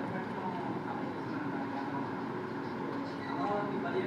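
Steady low background hum of a quiet room, with a faint voice about three seconds in.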